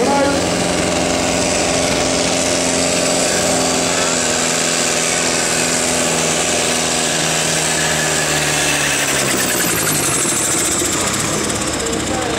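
Diesel farm tractor engine working at full power as it pulls down the tractor-pull track, blowing black smoke. Its note holds steady, then drops in pitch over the last few seconds as the engine bogs under the load.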